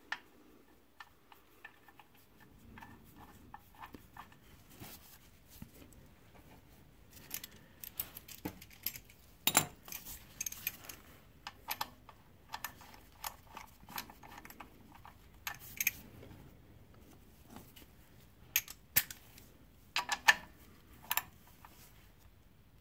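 Irregular light metallic clicks and ticks of a socket and ratchet on an engine oil pan drain plug as it is refitted with a new washer and tightened, with a few sharper clicks now and then.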